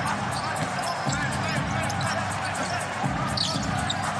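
Steady arena crowd noise with a basketball being dribbled on a hardwood court.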